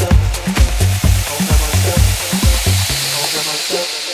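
Electronic dance music from a house/techno DJ mix. The kick drum and bass pulse at about two beats a second, then drop out about three seconds in, while a hissing white-noise sweep builds up over them: a breakdown.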